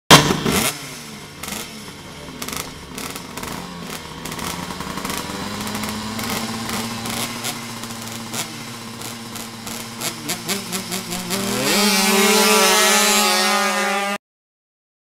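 Tuned two-stroke Vespa drag scooters at the start line, engines held at revs with irregular crackling. About twelve seconds in, the pitch climbs sharply and holds at high revs as they launch and run down the strip.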